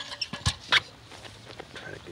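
Handling noise from a rusty metal gas mask canister: a few sharp clicks and knocks in the first second, one with a dull thump and a short scrape, then fainter rattling as a hand moves the canister and reaches inside it.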